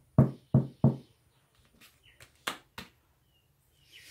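Sharp knocks on a tabletop while tarot cards are handled: three quick, loud knocks in the first second, then a few softer taps around the middle.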